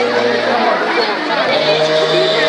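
Crowd of people chattering all at once in an open courtyard. Beneath the voices runs a steady droning tone that breaks off less than a second in and comes back a little higher after about one and a half seconds.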